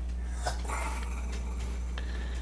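Steady low electrical hum under faint scratching of a ballpoint pen writing on a paper pad, with a soft click about half a second in.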